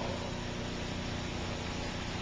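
Steady background hiss of the recording with a faint low hum, in a pause between spoken sentences.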